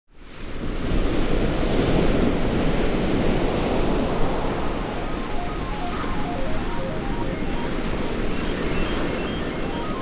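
Ocean surf breaking on a sandy beach: a steady rush of waves that fades in over the first second. Faint music with short notes comes in under it about halfway through.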